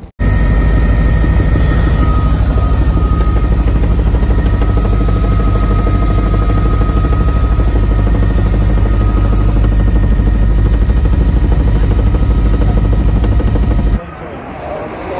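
Helicopter in flight heard from inside the cabin: a loud, steady engine and rotor drone with a fast low beat from the blades and a thin steady whine above it. The sound cuts in abruptly just after the start.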